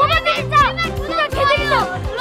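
Children shouting and yelling excitedly in high voices over background music with a steady beat.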